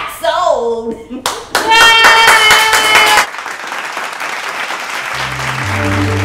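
Laughter and a loud, held call, then clapping for about three seconds, with low music notes starting near the end.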